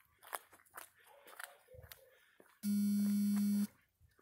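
Soft footsteps and small clicks as someone walks across a lawn. Then a man's voice holds a long, flat "I…" for about a second near the end.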